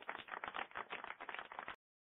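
Applause: a dense patter of many hand claps, faint and dull-sounding, cut off abruptly near the end.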